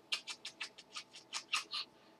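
Rapid run of soft kisses pressed onto a baby's head, a dozen or so quick lip smacks at about six or seven a second, fading toward the end.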